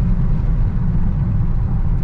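Steady low rumble of a tuned BMW 535d on the move, heard from inside the cabin: road and diesel engine noise at an even pace, with no rise or fall in pitch.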